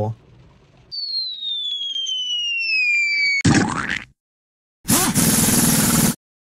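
Logo-intro sound effect: a whistle falling steadily in pitch for about two and a half seconds ends in a loud bang, like a dropping bomb hitting. After a short silence comes a second loud, noisy blast lasting about a second.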